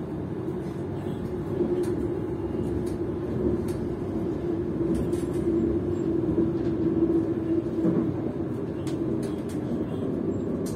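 A passenger train running at speed, heard from inside the carriage: a steady low rumble of wheels on rail with a steady hum. The hum grows louder about one and a half seconds in and eases near the end.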